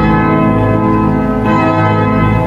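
Organ music: slow, sustained chords held steadily, one chord giving way to the next.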